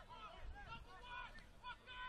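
Faint, distant voices calling out over a low background of ground noise.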